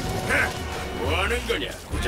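Two wordless voiced cries from an animated character or creature, the second one longer, about a second in, over background music.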